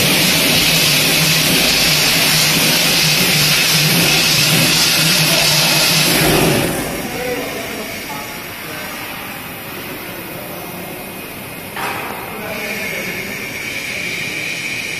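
BOPP tape slitting and rewinding machine running, a steady mechanical hum under a high hiss. The noise drops noticeably about seven seconds in and stays quieter, with one short knock near the end.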